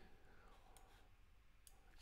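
Near silence: room tone with two faint clicks of a computer mouse while the map is scrolled and zoomed, one about three quarters of a second in and one near the end.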